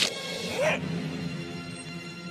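Film soundtrack played backwards: a sharp hit right at the start, a brief pitched cry about half a second in, then held orchestral notes.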